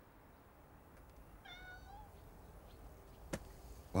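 A cat meows once, briefly, over a faint steady background hum, followed by a single sharp click near the end.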